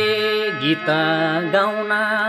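A man singing long, wavering held notes in a Nepali lok dohori folk song, with a steady drone beneath. The note changes about half a second in and again near the end.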